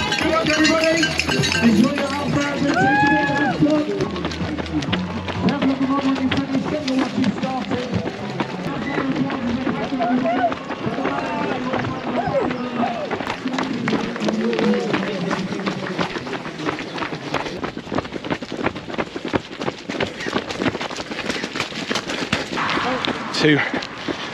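Footsteps of a pack of runners setting off on a wet path, with spectators' voices and cheers around them for the first part; later the footfalls go on with fewer voices.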